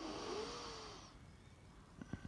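A cat's short, breathy meow, about a second long, rising in pitch and then trailing off.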